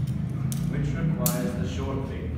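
A man speaking, with a brief sharp high-pitched sound about half a second in.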